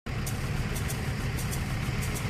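Orec Snow Rhino zero-turn tracked snowplow's engine running with a steady low rumble, with faint light ticks over it.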